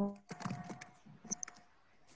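Faint computer keyboard typing: a quick run of irregular key clicks over about a second and a half, preceded by a brief voice sound at the very start.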